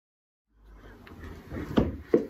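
Complete silence, then about half a second in a low room noise comes up with a few knocks, the loudest near the end.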